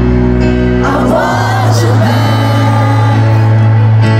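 A male voice singing live over sustained electric keyboard chords and a deep held bass note. The sung phrase bends in pitch in the first couple of seconds.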